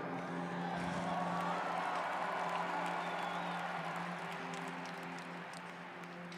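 Large arena crowd cheering and applauding over a sustained keyboard pad. The cheer swells over the first couple of seconds, with a few whistles, then fades away.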